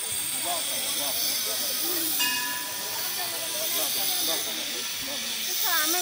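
Background voices of several people talking over a steady hiss. A short, high tone sounds once about two seconds in.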